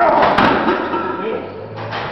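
A man's loud, wordless shout of effort bursting out at the start, with a few sharp knocks about half a second in, typical of gym weights being worked.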